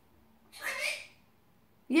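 Galah (rose-breasted cockatoo) giving one short, raspy squawk about half a second in.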